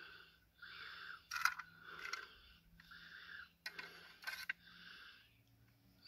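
Faint, close breathing: a series of short breathy puffs, with a few light clicks from something being handled.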